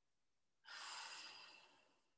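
A woman breathing out audibly in one sigh of about a second during a leg stretch.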